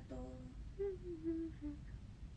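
A woman humming a few soft, short notes with her lips closed.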